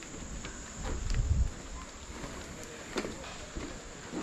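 Steady high-pitched drone of rainforest insects. A low rumble comes about a second in, and a single sharp click near three seconds.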